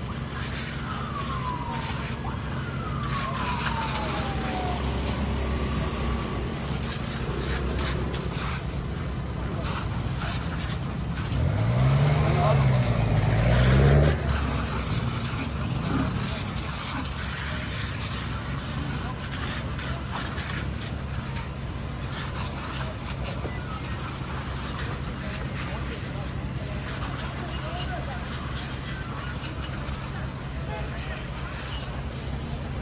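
Steady low hum of a fire engine's running engine at a burning city bus, under people's voices. Two falling siren-like tones sound in the first few seconds, and a loud rising-and-falling sound comes about twelve seconds in.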